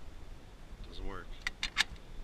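Three sharp metallic clicks in quick succession near the end, as the handset of an old coin payphone is handled in its cradle. A brief rising voice sound comes just before them.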